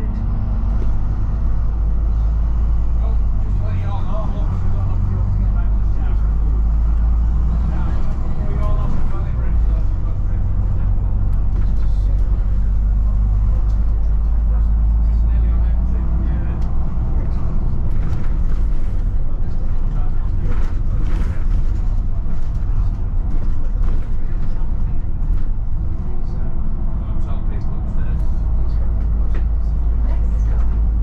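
Volvo B9TL double-decker bus's six-cylinder diesel and ZF Ecolife automatic driveline running under way, heard inside the bus: a steady low rumble, with light rattles and clicks from the body.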